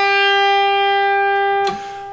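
Electric guitar sounding a single pre-bent note: the B string at the seventh fret, bent a half step before being picked so that it sounds at the eighth-fret pitch (G), and held at a steady pitch. About a second and a half in, the note drops sharply in level and dies away.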